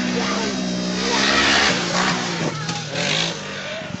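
A Polaris RZR side-by-side's engine running at high revs as it drives across the sand: a steady drone that drops in pitch about two and a half seconds in, with bursts of rushing hiss around the middle.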